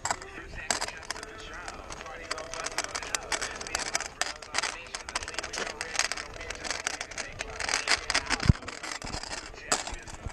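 Kick scooter rolling over pavement: a steady jumble of rattling and clicking from the wheels and deck, with a sharp knock late on.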